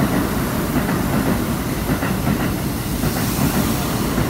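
Keikyu limited express (Kaitoku) train running through the station at speed without stopping: the steady noise of its wheels on the rails, with a brighter hiss near the end.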